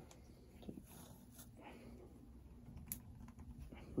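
Faint clicks and handling noise of a plastic action figure as its head is pulled off and swapped for another.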